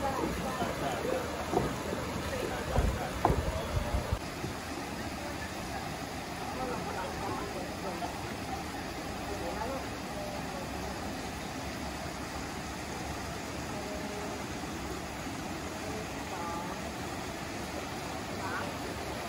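Chatter of many tourists' voices over the steady rush of a small river flowing over a weir, with a few low thumps about three seconds in.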